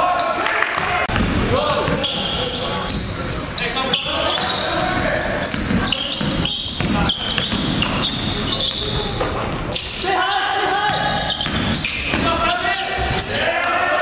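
Indoor basketball game sounds in a large gym: a ball bouncing on the hardwood floor, with players' voices calling out on the court.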